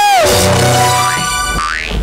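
A comic musical sound effect. A pitched note slides sharply down at the start and holds. Near the end, upward sweeping glides follow.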